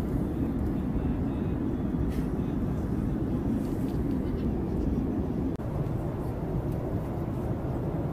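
Steady low rumble of an airliner's engines and airflow heard inside the passenger cabin, with one brief gap just past halfway.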